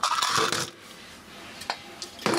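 Handling noise from small tools and plastic fittings being moved about: a loud scrape or rustle in the first half-second or so, then quieter, with one sharp click near the end.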